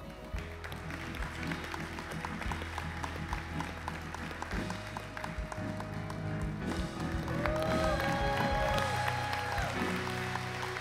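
Live band playing a slow song with held bass notes and regular drum beats. About seven seconds in, the congregation breaks into applause and whooping cheers for the baptism, and the sound grows louder.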